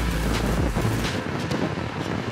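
Wind rushing over a helmet-mounted camera microphone while riding a motorcycle on a highway, with road and engine noise underneath. A low rumble fades out about a second in.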